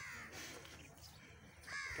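A crow cawing twice: short, harsh calls, one at the start and one near the end.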